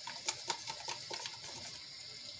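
A wooden craft stick stirring thinned black acrylic paint in a plastic cup, clicking against the cup about four times a second and stopping about one and a half seconds in. Under it runs the steady hiss of a rain-sound machine.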